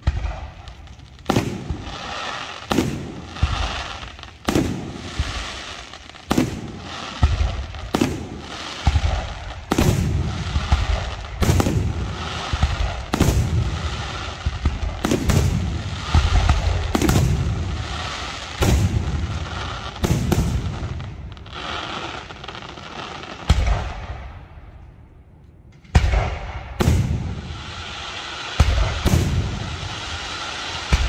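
Large aerial firework shells bursting in a display, sharp bangs coming about every one and a half to two seconds, each followed by a rolling echo. The bangs pause for a few seconds after about twenty seconds, then resume more closely spaced near the end.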